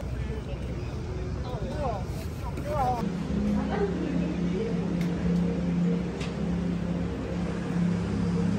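A steady low droning hum over a low rumble comes in about three seconds in and holds steady. Faint voices are heard just before it.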